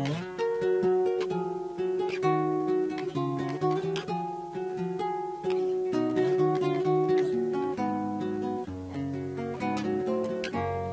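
Acoustic guitar playing an instrumental interlude in the style of a cielito: a plucked melody over changing bass notes, with chords struck here and there.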